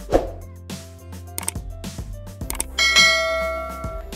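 Background music with a steady beat; about three seconds in, a bright bell-like chime rings out and slowly fades.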